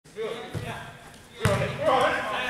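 A soccer ball being kicked on indoor turf: one sharp thump about one and a half seconds in, echoing in the hall, after a softer thud near the start, with players' voices calling.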